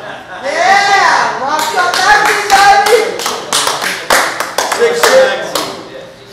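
A small group clapping in uneven claps, with loud voices calling out and exclaiming over it.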